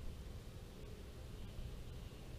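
Faint wind rumbling on a small camera microphone, with a steady hiss over it.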